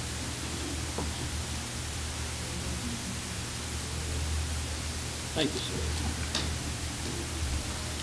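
Room tone of a meeting hall: a steady hiss with a low hum and faint, indistinct voices. Two brief faint sounds come near the end.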